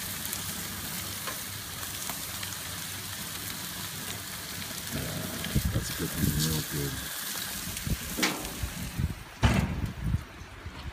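Steady sizzling hiss from foil packets of trout and vegetables cooking on a barbecue grill, with a sharp, loud knock near the end.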